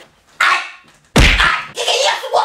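Short rustling scrapes as a squeegee head is rubbed against clothing and bedding, with a heavy thump about a second in.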